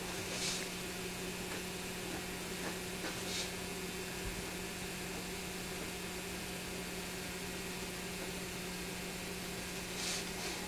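Steady low hum and hiss of an old VHS recording, with two brief scratching sounds, about half a second in and about three and a half seconds in: an ink pen stroking across drawing paper.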